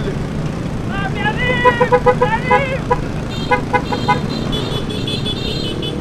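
Motor scooter horns honking in quick series of short beeps, with further held toots toward the end, over the steady low noise of scooter engines and wind.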